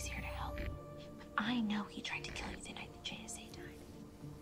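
Soft whispered dialogue from a TV episode over a low, steady music score.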